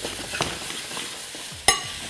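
Sliced onions sizzling as they caramelize in a stainless steel skillet, stirred with a metal spoon and tongs. Near the end a metal utensil strikes the pan with a sharp, ringing clink.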